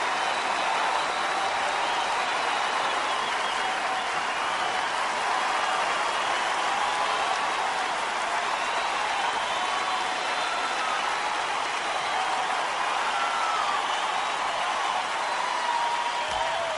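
Audience applauding steadily, with crowd noise and a few faint whistles, from a live music recording.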